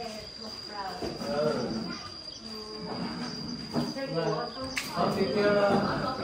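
A steady, high-pitched insect drone, one unbroken tone, running under people talking.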